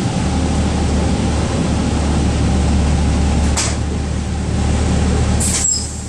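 Interior sound of a 2012 Gillig Low Floor transit bus: the engine runs with a steady low hum as the bus pulls up and stops. There is a single click about three and a half seconds in and a short burst of air hiss near the end.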